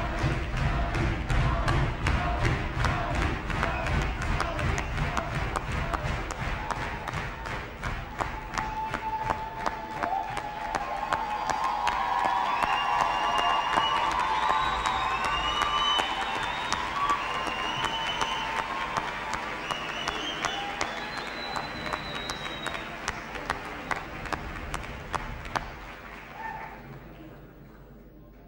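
A large audience applauding, with scattered cheers and shouts rising through the middle. The clapping dies away near the end.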